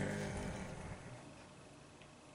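A man's drawn-out hesitating "euh" trailing off, then quiet room tone.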